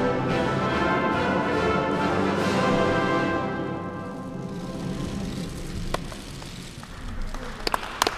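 Orchestral music with brass and timpani, loud for the first few seconds, then dying away about halfway through. Quieter room sound follows, with a few sharp clicks near the end.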